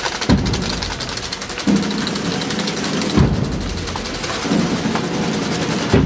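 Procession band playing a slow funeral march: a bass drum booms about every second and a half under held low brass notes.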